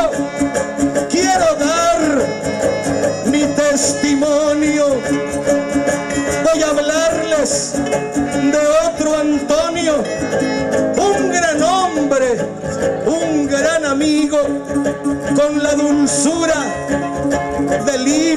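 A son arribeño ensemble playing an instrumental interlude: violins carrying a wavering, ornamented melody over strummed guitars.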